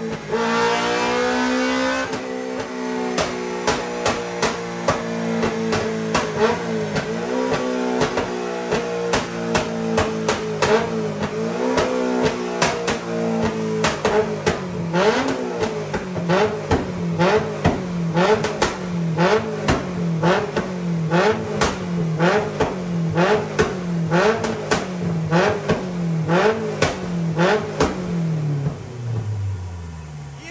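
Honda K20 inline-four, swapped into a Toyota MR2 Mk3, running on a rolling road through its custom exhaust. Its pitch eases slowly down, and about halfway through a regular pulse sets in about once a second, each pulse with a sharp crack. It winds down near the end.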